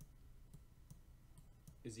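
Faint, sharp clicks at irregular intervals, about five in two seconds, from a stylus tapping on a tablet as an equation is handwritten on screen.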